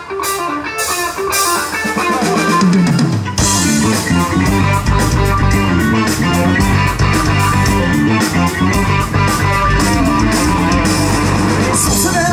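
Live rock band playing an instrumental passage: electric guitars over bass and drum kit. Near the start the band thins out and a low note slides downward, then the full band with drums comes back in about three seconds in.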